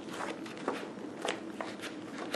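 Paper pages of a printed service manual being flipped through by hand: several quick, crisp page flicks, one after another.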